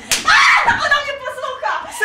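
A sharp smack just after the start, then loud, high-pitched wordless vocal cries from the actors that rise and fall, with a second cry beginning near the end.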